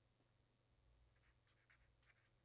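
Near silence, with the faint scratching of a pen writing on paper.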